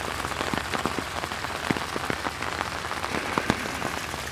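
Steady rain falling on a pond and wet leaves, with scattered sharp drop ticks close by.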